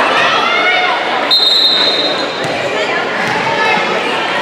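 Many spectators' and players' voices talking and calling across a gym, with a referee's whistle blown once in a single steady note about a second and a half in. A volleyball is then bounced on the hardwood court floor a couple of times.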